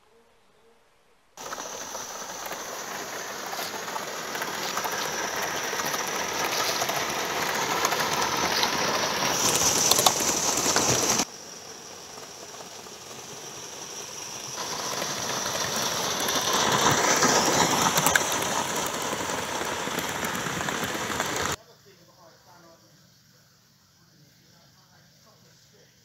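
Gauge One model train running along the track with a continuous mechanical clatter of wheels on rails. It swells to a peak as it comes close, twice, with the sound cutting off abruptly after each run.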